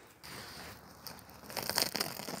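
Woven plastic sack lying over a beehive's frames crinkling and rustling as it is handled, with a denser burst of crackling in the last half second.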